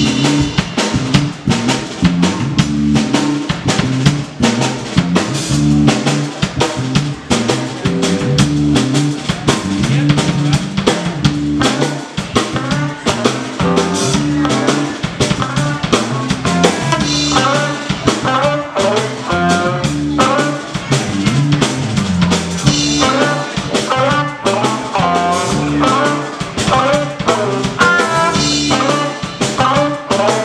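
A live instrumental funk-rock band playing a drum kit, a Fender Precision bass, a PRS electric guitar and a Moog keyboard, with a steady driving beat. Higher melodic lines join the bass and drums about twelve seconds in.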